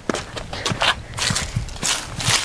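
Footsteps and the rustle of a hand-held camera being carried: irregular crunches and scrapes, a few a second.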